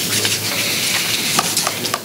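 Paper rustling and shuffling close to table microphones: a continuous crackling rustle with a few sharper ticks about a second and a half in.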